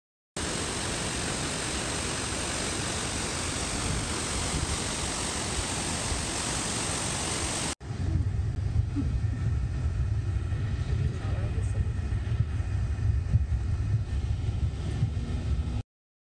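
Rushing water of the Simmser waterfall, a steady roar of noise. About eight seconds in it cuts abruptly to a low, uneven rumble.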